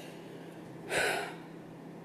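A man's short, sharp intake of breath about a second in, over faint room tone.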